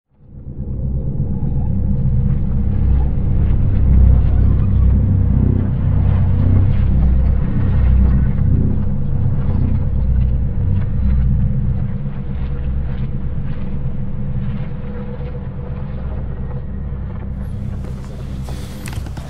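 A low, rumbling ambient drone with a steady hum, fading in over the first second and easing a little over the last few seconds.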